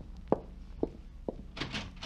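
Footsteps crossing a floor, a sound effect at about two steps a second, followed near the end by a door being opened.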